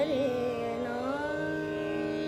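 A woman singing a semi-classical Hindustani vocal line over a steady drone: her voice glides downward, then rises about a second in to a long held note.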